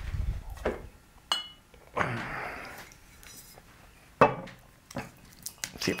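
Glass whisky bottles being handled, with a short ringing clink about a second in, some rustling, and a sharp knock on the stone tabletop about four seconds in.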